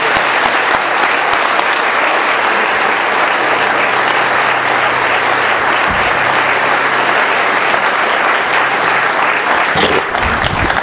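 Audience applauding, a roomful of people clapping steadily as a speaker finishes his talk.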